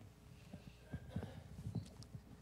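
Faint, irregular light knocks and taps, more than a dozen in two seconds.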